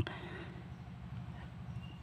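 Faint, steady background noise with a low hum and no distinct sound event.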